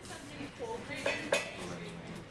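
Two sharp clinks of hard objects knocked together about a second in, the second one louder, over faint background voices.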